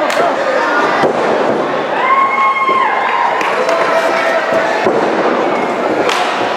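Sharp impacts of wrestlers' bodies hitting each other and the ring, one as a flying kick lands at the start, another about a second in, one near the end, over a crowd shouting and calling out, with a few long held yells.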